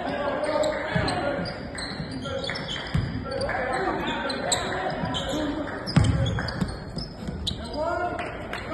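Live basketball game sound in a large, echoing gym: a ball bouncing on the hardwood floor and sneakers squeaking, under indistinct shouts from players and spectators. A loud thud comes about six seconds in.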